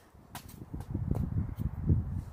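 Low, uneven rumble of wind and handling noise on a phone microphone outdoors, with a few faint clicks.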